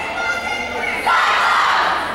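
A girls' volleyball team shouting a huddle cheer together, many young female voices at once. A second, louder group shout breaks out about a second in and trails off near the end.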